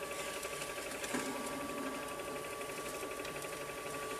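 X-Rite DTP41 strip-reading spectrophotometer's transport motor running with a steady whir and a held whine as it draws a colour chart strip through to be read, with a small click about a second in.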